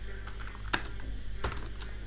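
Computer keyboard being typed on: about half a dozen separate key clicks with uneven gaps, over a steady low electrical hum.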